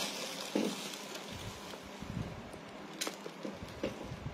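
A clear plastic bag crinkling and rustling as it is handled, with a few sharp clicks.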